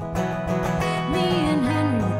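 Live Americana song: a solo acoustic guitar is strummed, and a woman's singing voice comes back in about a second in.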